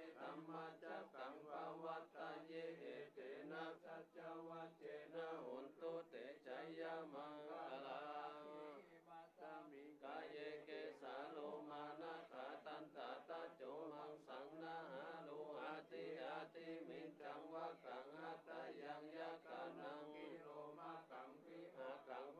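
Group of Buddhist monks chanting Pali verses together in a steady, even recitation, with a brief dip in the voices about nine seconds in.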